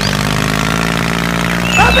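Tractor engine running steadily at idle, a continuous low drone. A voice starts near the end.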